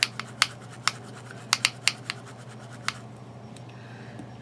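An eyeshadow brush scraping and tapping against skin and the felt mat: a string of about eight short, sharp scratchy clicks over the first three seconds, over a steady low hum.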